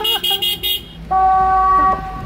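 Electronic siren and loudspeaker unit sounding through its horn speaker: a quick run of about six short high beeps, then a steady electronic horn tone held for about a second.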